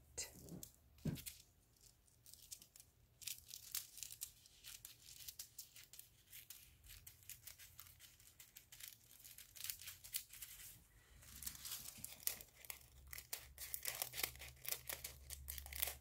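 Thin gold craft foil crinkling as a loose sheet is handled: faint small crackles, busiest at the start and over the last few seconds.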